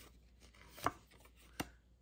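Two sharp taps about three-quarters of a second apart, from a small stack of Pokémon trading cards being handled over a playmat.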